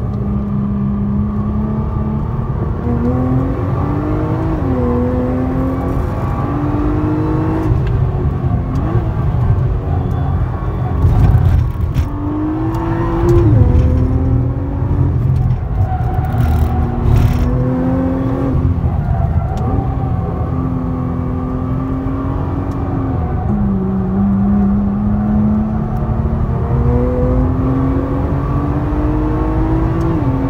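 Nissan GT-R's engine heard from inside the cabin at track pace, over a heavy low rumble. Its note climbs under acceleration and falls back several times, sharply about 13 seconds in and again near 23 seconds.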